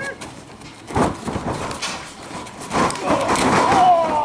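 A thud about a second in, a wrestler hitting the ring mat, followed by a few more knocks and shouting voices, with a long falling yell near the end.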